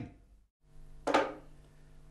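A single short knock about a second in, over faint steady room hum, after a moment of dead silence.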